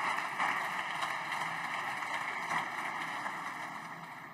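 Applause from the deputies in a parliamentary chamber, steady at first and then dying away near the end.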